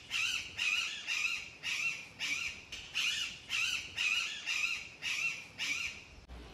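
A crow cawing over and over in a steady run of about two harsh calls a second.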